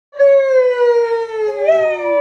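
Two high voices holding long drawn-out notes that fall slowly in pitch. The second joins about one and a half seconds in and overlaps the first.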